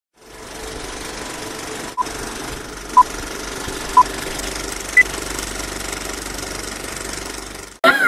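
Film projector sound effect: a steady, fast mechanical rattle of film running through the gate, with countdown-style beeps: three short, same-pitched beeps a second apart, then a higher beep. The rattle cuts off suddenly just before the end.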